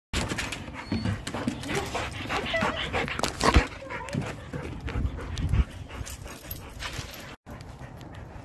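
Two dogs, a black Labrador and a Samoyed, playing, with short dog vocalizations amid scuffling and handling noise, and a sharp knock about three and a half seconds in.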